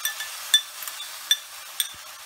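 Sharp ringing clinks, three of them loud, as a small bowl knocks against a metal pan while paste is tipped out of it, over the steady sizzle of onions frying in oil.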